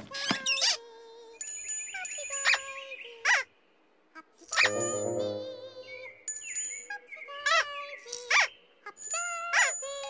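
Playful children's TV music with high tinkling chime notes, broken by a series of short squeaky sound effects that slide up and down in pitch, about seven in all.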